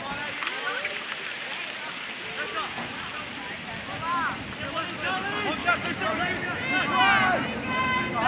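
Several voices shouting and calling at once across a rugby league field: short overlapping shouts, louder around the middle and again near the end.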